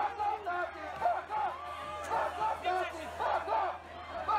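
Crowd of protesters shouting and yelling over one another during a street brawl, many voices overlapping at once.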